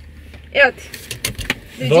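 Rustling and a few soft knocks and clicks as people shift about in a car's seats, with a brief vocal sound about half a second in. A low hum fades out about a second in.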